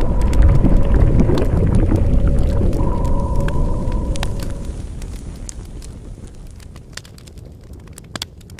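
Logo-animation sound effect: a deep rumble scattered with crackles and a couple of held tones, fading away over the second half.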